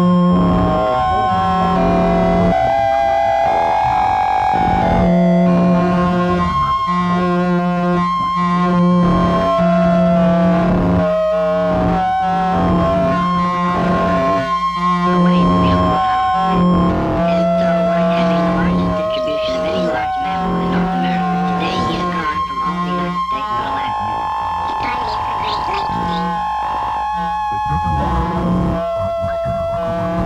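Droning experimental music with effects-laden, distorted held tones: a low hum and higher sustained notes that cut out and come back every second or two in a stuttering, repeating pattern.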